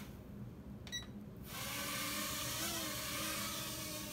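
Small toy quadcopter drone: a short beep just before a second in, then its motors and propellers spin up at about a second and a half into a steady high whirring hiss.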